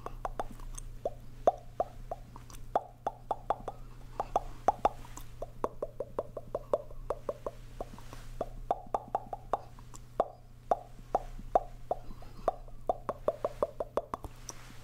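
Mouth pops and clicks made into cupped hands close to a microphone. They come in quick runs of about five or six a second with short breaks between runs, and each pop has a clear pitch that shifts from run to run.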